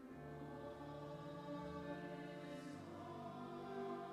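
Mixed high school choir of boys and girls singing in parts, holding long notes that shift every second or so.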